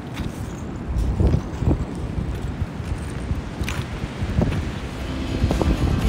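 Wind buffeting the microphone: a low rumble with a few gusty thumps. Guitar music fades in near the end.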